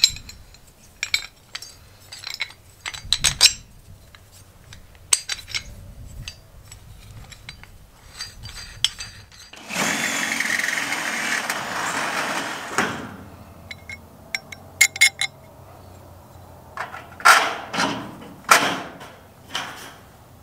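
Sharp metal clicks and clinks as a pulley roller and bolt are fitted into a steel bracket. About ten seconds in, a Ryobi 18V cordless drill runs steadily for about three seconds, drilling into the metal frame of a door, and winds down as it stops. A few more metal clinks and knocks follow near the end.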